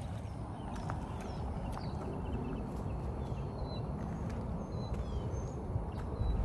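Outdoor lakeside ambience: a steady low rumble of wind on the microphone, with a few faint, high bird chirps scattered through it.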